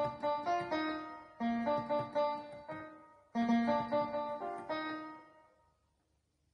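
Keyboard with a piano sound playing the melody of a 2022 World Cup song in B-flat major, at full tempo. The phrase dies away about three seconds in, starts again, and fades out near the end.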